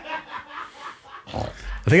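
A woman laughing hard in short, breathy bursts.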